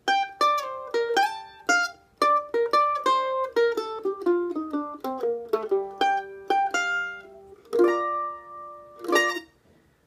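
F-style mandolin picking a gypsy-jazz lick in B-flat: quick single plucked notes, a run stepping down the B-flat major scale in the middle, then a couple of held, ringing notes near the end.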